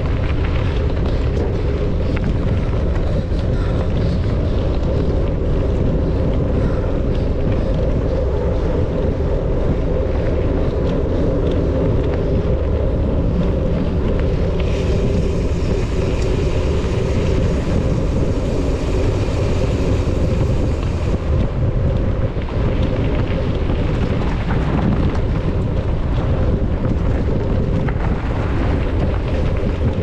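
Wind buffeting the microphone of a camera on a moving mountain bike, over a steady low rumble of knobby tyres rolling on a dirt and gravel forest road. A higher hiss joins for several seconds past the middle.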